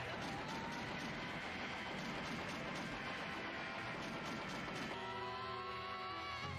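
Anime episode soundtrack playing quietly: a steady noisy action sound effect over music for about five seconds, then giving way to held musical tones with one slowly rising note.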